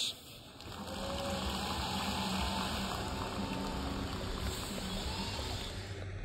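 Large audience applauding: a steady wash of clapping that builds about a second in and holds.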